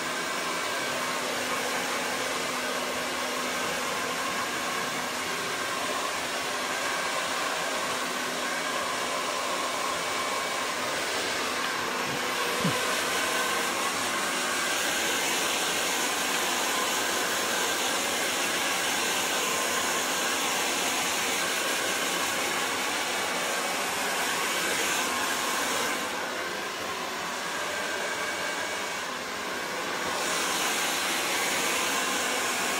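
Handheld hair dryer blowing steadily at the roots of short hair, a continuous rush of air. The sound dips slightly for a few seconds near the end.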